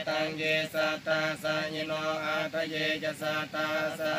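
Buddhist monks chanting Pali verses together in a steady monotone, the voices held on one level pitch and broken into even, regular syllables.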